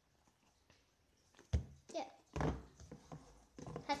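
A single sharp knock about a second and a half in as a plastic-lidded Nutella jar is handled and opened, followed by a girl's voice.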